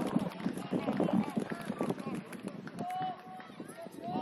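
Footballers shouting and calling to one another across the pitch during play, the words indistinct, with one longer held call about three seconds in.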